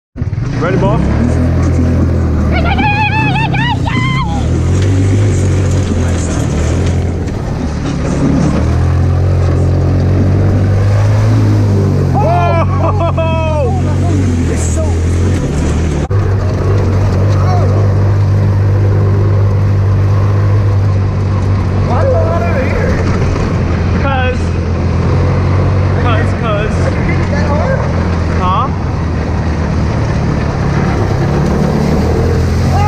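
Hammerhead GTS 150 go-kart's small single-cylinder engine running steadily under throttle, a loud low drone whose pitch shifts a few times. Voices shout over it several times.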